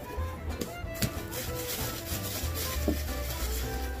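Soft background music, with rustling and a couple of light knocks as a cardboard shipping box and its contents are handled.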